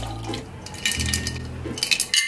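A drink being poured from a metal cocktail shaker into a glass over ice, with light clinks near the end.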